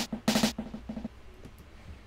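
Hip-hop beat playing back from production software: a quick run of drum-machine hits over a low bass note, with claps heavy in reverb among them. Playback stops about a second in.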